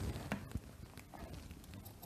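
Large tailor's shears cutting through fabric: a few faint, irregular snips and clicks as the blades close.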